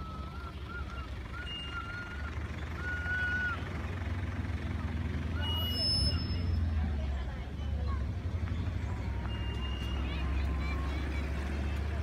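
Outdoor ambience: a steady low rumble with faint distant voices, and a few thin whistled calls in the first few seconds.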